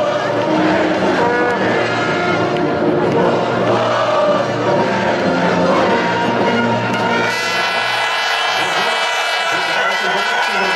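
Large crowd of football supporters, a dense mass of voices with singing or chanting mixed with music. About seven seconds in, the low rumble thins and higher, sustained tones take over.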